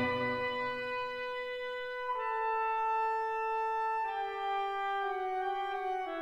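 Orchestral music, slow and quiet: a lone wind instrument holds long notes, stepping down in pitch about every couple of seconds, four notes in all.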